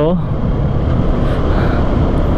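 Steady wind buffeting on the microphone and running noise from a Benelli 150S single-cylinder four-stroke motorcycle, ridden at a steady cruise, with a heavy low rumble underneath.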